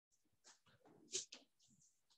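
Faint squeaks of a marker pen drawn along a ruler on a whiteboard: a few short strokes, the loudest about a second in.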